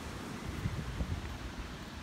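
Wind buffeting the microphone as a low rumble, over steady beach surf.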